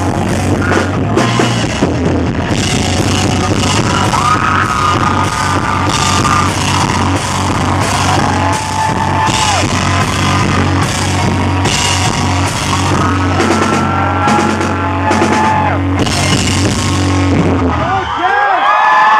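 Live rock band playing the closing section of a song: electric guitars, bass and drum kit going continuously and loudly, with long held notes of about two seconds each over the top.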